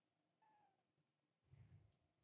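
Near silence: room tone, with a very faint short falling tone about half a second in.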